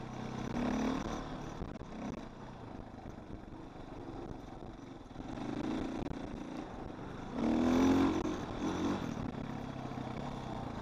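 Dirt bike engine heard from onboard while riding a trail, running steadily with throttle surges: a short one about a second in and a longer, louder rev near eight seconds.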